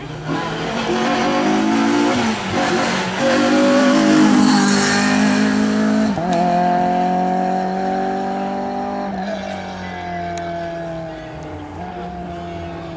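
Renault Clio II rally car's four-cylinder engine under hard acceleration, the note climbing in each gear and dropping back at the shifts about six and nine seconds in. It is loudest about four seconds in and fades as the car pulls away.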